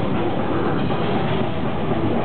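Death metal band playing live: distorted guitars, bass and fast drumming merge into a loud, unbroken wall of sound.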